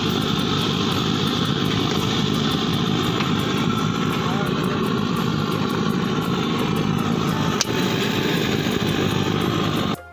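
Steady, loud roar of the tea stall's stove burner under a large pot of boiling tea, with a single short metallic clink about three-quarters of the way through. The roar cuts off suddenly at the end.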